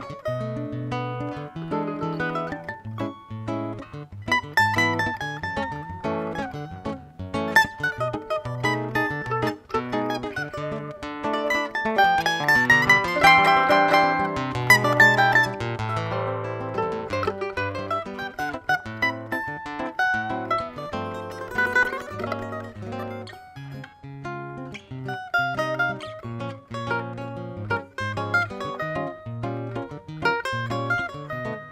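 Instrumental duet of a small cavaquinho-sized plucked string instrument carrying the melody over a classical guitar's chords and bass line. About halfway through, a run of rapid notes is the loudest passage.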